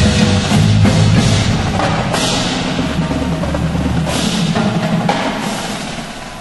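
A high school percussion ensemble playing a loud passage of drums and percussion, with several swells of bright high sound over the drums. The volume eases off near the end.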